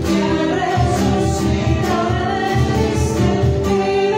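A recorded worship song: voices singing together over instrumental accompaniment with a steady low beat.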